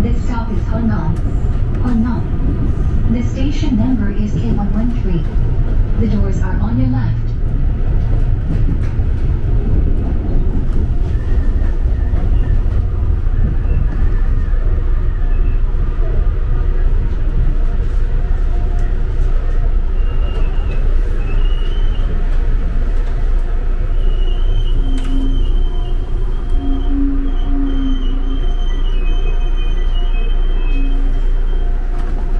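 Gyeongui–Jungang Line commuter train running, heard from inside the carriage: a steady low rumble of wheels on track. People's voices are heard over the first several seconds, and thin high-pitched squeals come in from about twenty seconds in.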